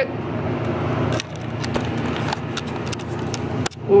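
Food frying in a pan on a gas hob: a steady sizzle with scattered crackles and pops, breaking off briefly near the end.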